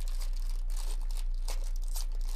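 Foil wrapper of a 2024 Topps Series 2 baseball card jumbo pack being torn open and crinkled by hand: a run of irregular crackles over a steady low hum.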